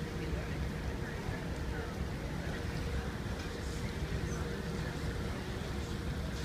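Cruise ship deck ambience: a steady low rumble with a faint, constant hum and indistinct voices of people nearby.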